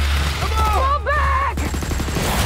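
Film action soundtrack: a deep steady rumble under high, wavering cries, then a quick run of sharp cracks like automatic gunfire near the end.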